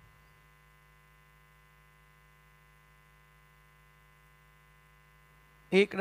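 Faint, steady electrical hum, a mains buzz in the broadcast's audio feed, unchanging throughout.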